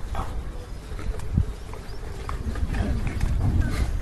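A pack of street dogs jostling and making small sounds as they are fed by hand, over a steady low rumble with scattered short clicks.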